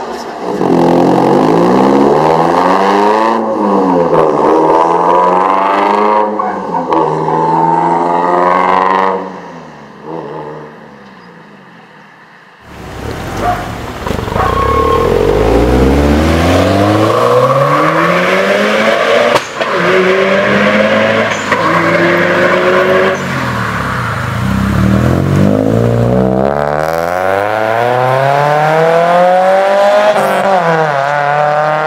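Car engine being revved hard, its pitch climbing and falling again and again. It dies down for a few seconds past the middle, then comes back suddenly loud with more revving and accelerating.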